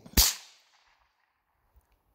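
A single shot from a Mossberg 715T .22 LR semi-automatic rifle: one sharp crack just after the start that dies away within about half a second.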